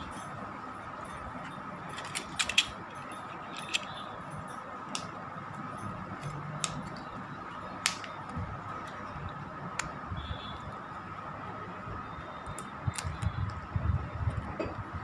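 Scattered clicks and light taps of a rugged phone case being handled on a phone, with a denser run of knocking and rubbing near the end as the case is pulled off. A steady faint high hum runs underneath.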